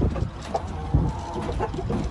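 Chicken clucking, with one thin, drawn-out call held for about a second in the middle.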